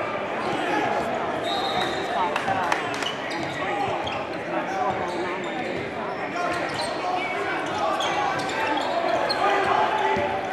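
Basketball game sounds: a steady hum of crowd chatter, with a ball being dribbled on the hardwood court and scattered sharp knocks and short high squeaks.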